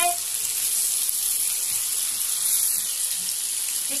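Chicken pieces frying in hot oil with ginger-garlic paste, curry leaves and green chillies, a steady high-pitched sizzle as the chicken is sautéed.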